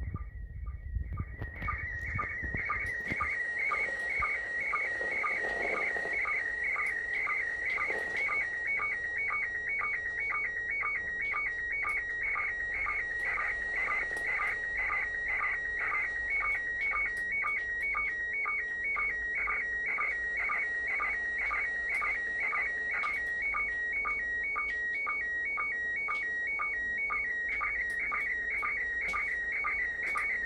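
Slow-scan television (SSTV) picture signal from the International Space Station in PD120 mode, heard from an FM radio receiver. It is a high, warbling electronic tone with short sync beeps repeating at an even pace, as an image is transmitted line by line. It starts about a second in and carries on steadily.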